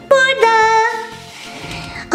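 A high voice sings a short held note that steps up in pitch about half a second in and then fades, over light background music.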